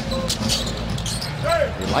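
A basketball being dribbled on a hardwood court, several bounces over a steady background of arena crowd noise.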